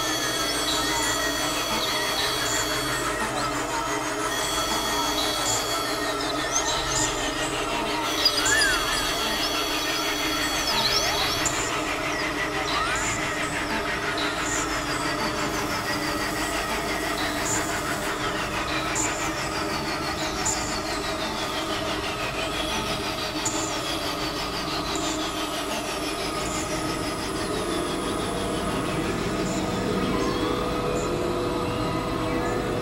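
Experimental electronic drone music from synthesizers: layered steady drones under high sustained tones that switch on and off in blocks over the first twelve seconds, then many falling pitch sweeps repeating every second or two.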